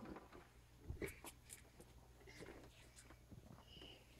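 Near silence: a few faint clicks and rustles as a small child handles the door of a front-loading dryer.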